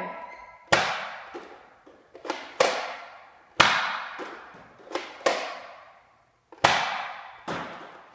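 Nerf Elite Firefly blaster, fitted with a long shot barrel, fired again and again in a room: about five sharp snaps roughly a second apart, each dying away in a short echo, with smaller knocks between the shots.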